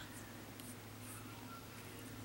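Faint, brief scratching and rustling from Pekingese puppies shuffling about on carpet, over a low steady hum.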